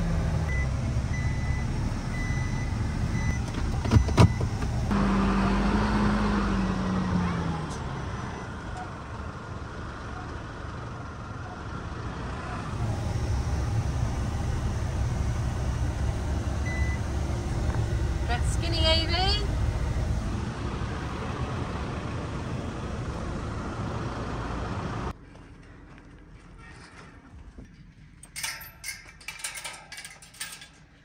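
Isuzu NPS 4x4 truck's diesel engine running at crawling speed, heard from inside the cab, with two sharp knocks about four seconds in and a falling engine note shortly after. Near the end the engine sound gives way to a quieter outdoor background with a few metallic clanks from a steel gate being latched.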